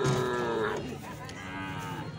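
Cattle mooing: a long call that fades out just under a second in, then a second, lower call near the end.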